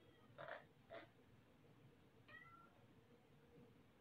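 Near silence: room tone, with two faint soft sounds in the first second and one short, faint high-pitched call a little over two seconds in.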